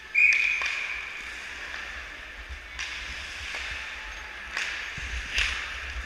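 Ice hockey play on an indoor rink: a sharp loud sound about a quarter second in that rings and fades over about a second, then skates on the ice and several sharp stick or puck clacks near the end.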